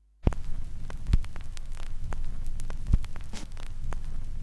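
Vinyl record surface noise from a stylus riding the groove: steady crackle and hiss over a low hum, with scattered sharp pops. It starts abruptly with a click about a quarter second in, as the stylus drops onto the record.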